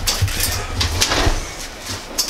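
Several knocks and scrapes as a metal-framed sliding glass window is handled, over a low rumble from the camera being carried.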